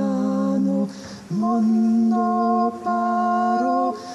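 A solo singer's voice, unaccompanied and amplified through a microphone, singing a classical piece: a short note, a breath about a second in, then a long held note that steps slightly in pitch near the end.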